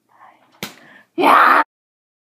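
A sharp tap on the camera, then a loud half-second burst of rustling noise as it is handled at close range, before the sound cuts off.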